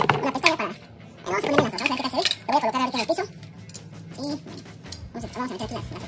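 Short clicks and rattles of small plastic and metal parts being handled as a par LED light's mounting bracket and knobs are fitted on, mostly in the second half.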